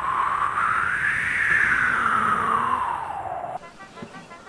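Wind sound effect: a whooshing gust whose pitch rises for about a second and a half, then falls away and cuts off abruptly near the end.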